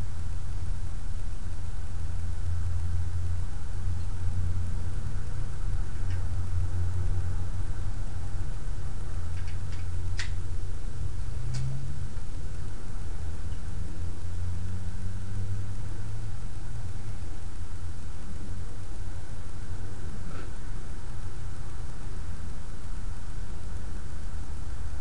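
A steady low rumble that holds unchanged throughout, with two faint clicks a second or so apart about halfway through.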